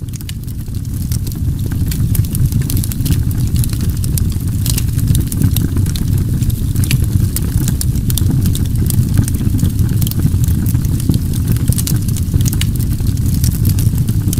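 A loud, steady low rumble with many small, scattered crackles and clicks throughout. It swells up at the start.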